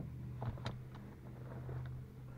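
Ram pickup's seat belt being pulled across and latched, with a couple of faint clicks about half a second in as the latch plate goes into the buckle, over a steady low hum.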